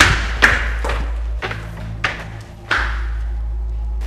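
A walking stick tapping on a tiled floor, a sharp knock with a short ring about twice a second, over a low droning film score.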